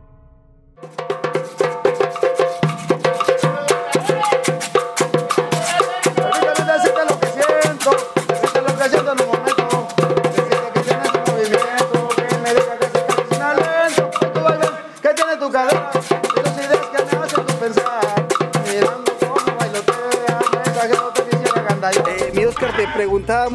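Cumbia music starting about a second in, with a metal güira scraping a fast, steady rhythm over sustained chords.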